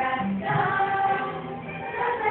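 Children's choir singing a song that lists the fifty states in alphabetical order, with sustained sung notes.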